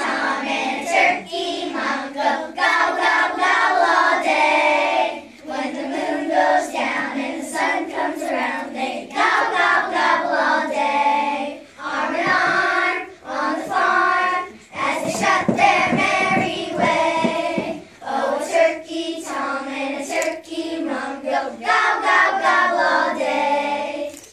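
A group of young children singing a song together in unison, in phrases separated by short breaks.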